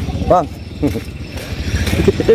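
Small motorcycle engine running at low revs, a steady low hum.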